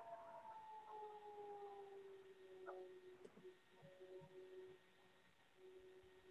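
Near silence on a video call, with a faint hum of a couple of held tones that sink slightly in pitch.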